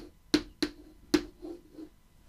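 Chalk tapping on a blackboard as an equation is written: four sharp taps in the first second and a quarter, then two fainter ones, each followed by a short low ring.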